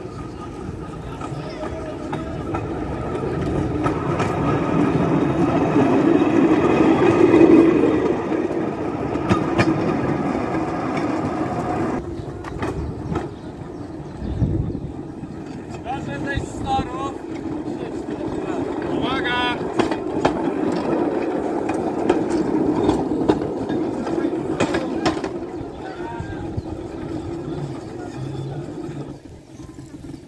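Crowd chatter over the steady running of a rail vehicle's engine, which grows louder over the first eight seconds or so. After an abrupt change about twelve seconds in, voices carry on over a lower hum.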